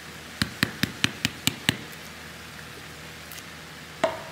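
A spice jar of smoked paprika being tapped to shake the powder out over a pan of vegetables: about seven quick, sharp taps in under a second and a half, then a faint steady hiss.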